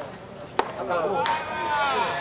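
A pitched baseball hitting the catcher's mitt: one sharp pop about half a second in, followed by voices.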